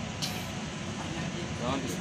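Steady low drone of shipboard machinery on a working vessel's deck, with faint voices coming in near the end.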